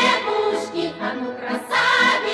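Choir singing a Soviet march with band accompaniment, with long held notes and a fresh loud phrase starting near the end.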